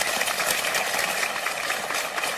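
Studio audience applauding steadily, a dense patter of many hands clapping.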